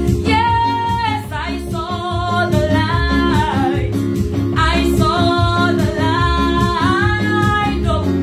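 A woman singing a Pentecostal gospel song with long held, wavering notes, accompanied by electronic keyboard chords and bass.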